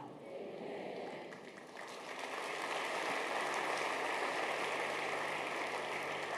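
Congregation applauding, the clapping swelling about two seconds in and then holding steady.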